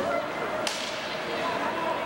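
A single sharp crack of a hockey puck impact about two-thirds of a second in, echoing around the ice rink, over a steady din of rink noise and voices.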